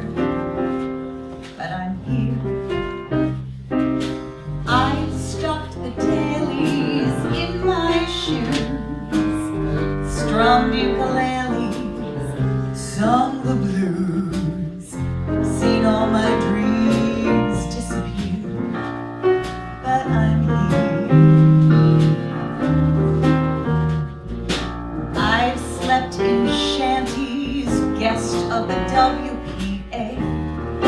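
A woman singing a show tune live, with vibrato on held notes, accompanied by piano and bass guitar.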